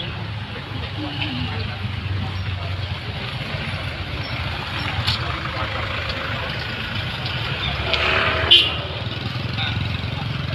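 Street noise: a steady low engine hum from passing traffic, with bystanders' voices and one brief sharp noise about eight and a half seconds in.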